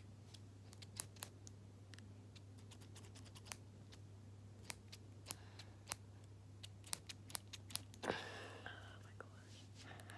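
Scissors snipping close to the microphone: scattered sharp snips that come faster a little before eight seconds in, followed by a brief breathy rush. A steady low hum runs underneath.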